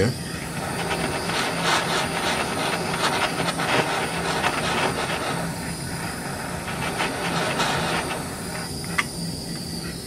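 Handheld gas torch flame hissing steadily while it heats an aluminum bracket for brazing with aluminum rod. A single short click about nine seconds in.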